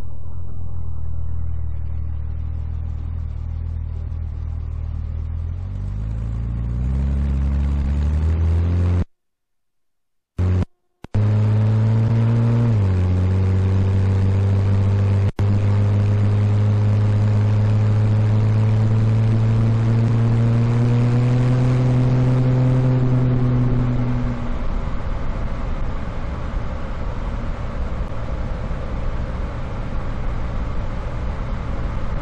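1965 Chevrolet Corvair's air-cooled flat-six engine driving the car along a winding road: the engine note climbs in pitch for several seconds, the sound cuts out briefly twice, then after a dip in pitch it holds a steady note that rises slowly. Near the end the engine note fades away, leaving road and wind noise.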